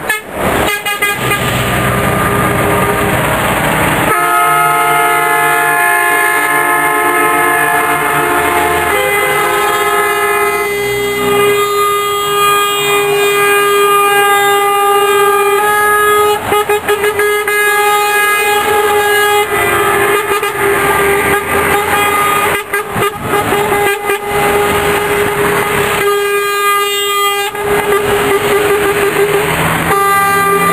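Semi-truck air horns blowing long, held blasts as the trucks pass in convoy, several horns of different pitch sounding one after another and overlapping, over the rumble of diesel engines.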